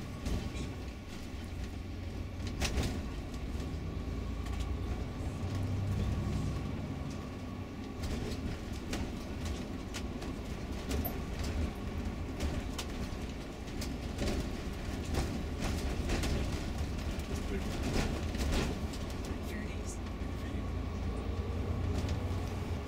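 Tour coach heard from inside the cabin while driving: a steady low engine and road rumble, with occasional sharp clicks and rattles.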